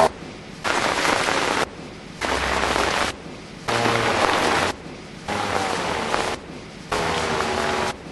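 Hurricane wind and rain on a camcorder microphone, heard as five cuts of about a second each with short quieter gaps between them.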